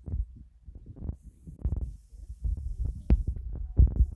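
Wind buffeting a phone's microphone in irregular low rumbling gusts, with a couple of sharp knocks of handling noise near the end.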